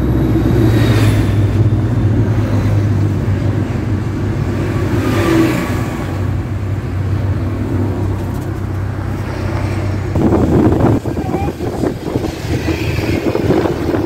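Car engine and road noise heard from inside the cabin while driving, a steady low hum. Near the end comes a spell of irregular knocks and rustling.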